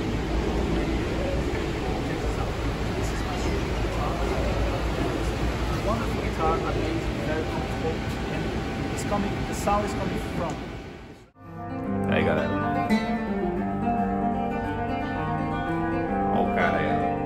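Steady low rumble of a large empty venue with a few faint clicks and knocks. About eleven seconds in it cuts off suddenly, and a nylon-string classical guitar is played, its notes and chords ringing out.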